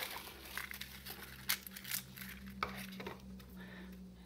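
Dry dead leaves crinkling and crackling in irregular bursts as they are pulled from a plastic tub and dropped onto potting soil in a plastic bowl.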